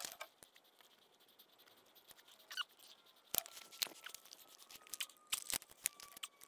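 Faint, scattered light clicks and rustles of hands handling black iron pipe fittings held up against the wooden band board, starting after about two seconds of near quiet.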